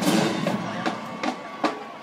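Marching band music dying down between phrases. Its sound rings out and thins, broken by a few sharp drum strikes.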